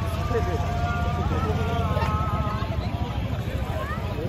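The Islamic call to prayer from a nearby mosque: a man's voice holding long notes that step slightly in pitch for about two and a half seconds, then trailing off. Under it runs a steady low rumble of traffic and crowd.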